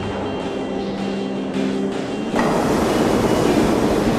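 New York City subway train running, its rumble swelling suddenly about two and a half seconds in as a train rushes into the station, under sustained background music.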